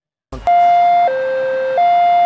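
Ambulance siren in its two-tone high-low mode: a steady higher tone and a lower tone alternating, each held about two-thirds of a second, starting about half a second in. It is the mode used to signal utmost urgency, calling on all traffic to give way.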